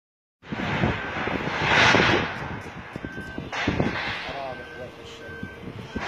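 A rushing noise, loudest about two seconds in, with three short high beeps in the second half and brief voices.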